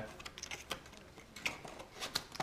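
Foil booster packs and their cardboard box being handled: a few light, sharp clicks and crinkles.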